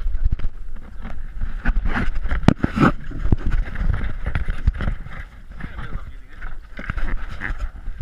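Handling noise from an action camera being picked up and moved around on a wooden boat: irregular knocks and bumps over a low rumble of wind on the microphone.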